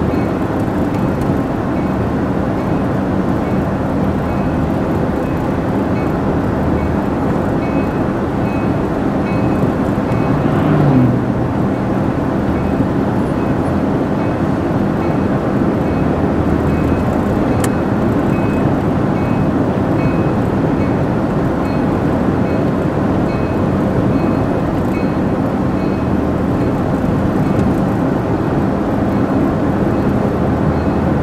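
Steady road and tire noise inside a moving car's cabin. A brief swelling sound with a bending pitch comes about ten seconds in.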